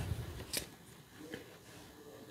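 A tarot card is drawn from the deck and laid on the table, with two faint, brief clicks of card against card, about half a second in and again just over a second in.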